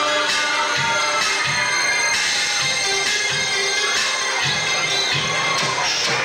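Live synth-pop from keyboards at a club gig, in a passage where the deep bass line drops out. A sustained synth melody and a beat carry on, and the crowd cheers over them; the bass comes back just after.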